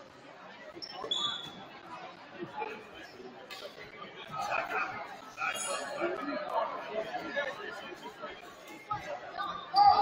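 Spectators' chatter filling a gymnasium, with brief high squeaks about a second in and again midway.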